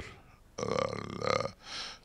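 A man's drawn-out hesitation sound, a single held 'eeh' lasting about a second, at a steady low pitch.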